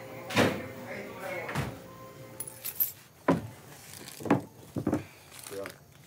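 Knocks and clunks of a household refrigerator door being opened and handled, about five sharp thuds spread across a few seconds.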